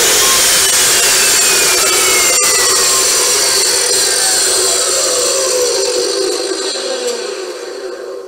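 Porter-Cable PCE700 abrasive chop saw test-run with no load for the first time: its motor starts suddenly and runs loud, then its whine falls steadily in pitch and fades as the wheel coasts down.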